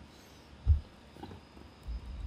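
A quiet pause with room tone and a single dull, low thump about two-thirds of a second in.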